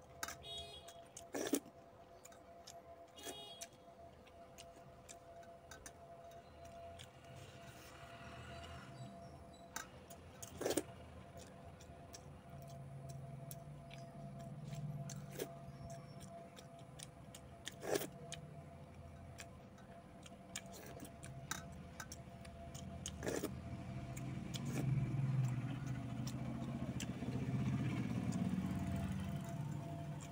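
Eating by hand from stainless steel bowls: a few sharp clinks of fingers against the steel, over a faint steady hum. A low rumble swells through the second half and is loudest near the end.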